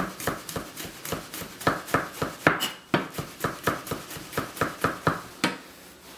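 Chef's knife slicing garlic cloves on a white plastic cutting board, the blade tapping the board in a quick, even run of about three to four strokes a second.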